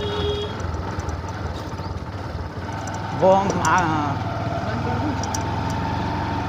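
Motor scooter engine running steadily while riding along a street, with low wind and road rumble.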